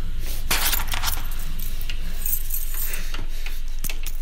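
Light jingling and rustling in a few bursts, with sharp clicks near the end, over a steady low hum.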